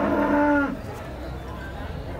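Cattle mooing: one long, steady moo that ends less than a second in.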